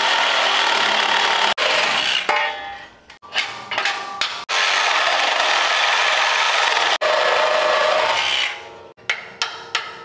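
Reciprocating saw cutting through the Chevy Apache's steel frame rail. It runs in long steady stretches, with stop-and-start bursts about 2 to 4 seconds in and again near the end.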